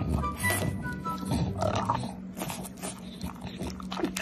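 A French bulldog chewing a mouthful of sushi roll and smacking and licking its lips, in irregular short mouth noises, over background music.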